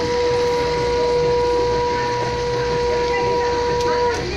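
A conch shell (shankha) blown in one long, steady note that stops near the end, with people talking around it.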